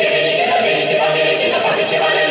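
Mixed chamber choir of men's and women's voices singing a cappella, holding steady sung notes.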